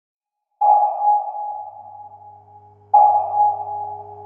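Two sonar pings, one about half a second in and another about two and a half seconds later, each ringing out and slowly fading over a low steady hum.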